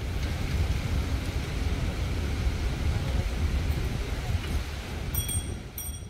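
Outdoor ambience dominated by a steady low rumble over a hiss, typical of wind on the microphone, with two brief high squeaks near the end.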